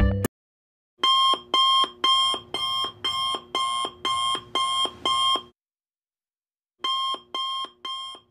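Electronic alarm-clock beeping, about two beeps a second for roughly four seconds. After a short pause a second run of beeps starts and fades away near the end. It follows the last moment of background music, which cuts off right at the start.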